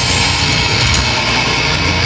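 Metalcore band playing live and loud: distorted electric guitars over bass and drums, in a dense, unbroken wall of sound.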